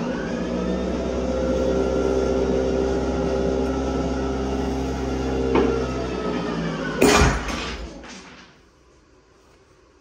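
A break-test machine's motor runs with a steady hum while it loads a 3D-printed composite PLA-carbon fibre part. About seven seconds in a single sharp crack sounds as the part fails under load, and the hum stops soon after.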